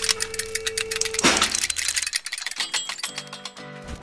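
Music of an animated intro sting: a held tone that ends in a sweep about a second in, followed by rapid clicking and ticking effects and short tones.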